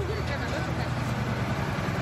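Engine of a water tanker truck running steadily as it pulls in, a low even hum, with people's voices faintly over it.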